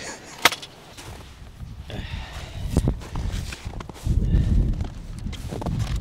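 Camera handling noise: a sharp click about half a second in and another near three seconds, then a low rumble from about four seconds in as the camera is carried over snowy ground.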